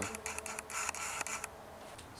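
Handling noise from a hand-held camera being swung around: a quick run of small clicks and rustles that dies away about a second and a half in.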